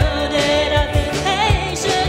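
Live rock band playing: a drum kit keeping a steady beat with kick-drum hits, electric guitar, and a woman singing a melody with vibrato.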